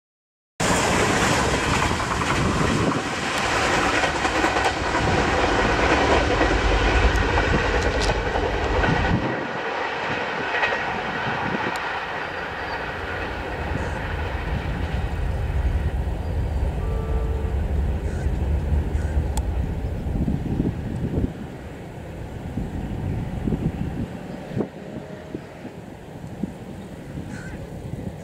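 Passenger train coaches passing close at speed, steel wheels clattering over the rail joints amid loud rushing noise. The sound drops about nine seconds in as the last coach goes by, then fades as the train recedes.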